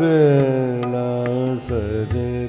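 Male Hindustani classical vocalist singing a long held note in Raag Ahir Bhairav, sliding slowly downward, then dipping into a new note shortly before the end.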